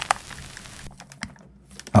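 A handful of sharp, light clicks scattered over a faint hiss just after the music has stopped, most of them bunched about a second in.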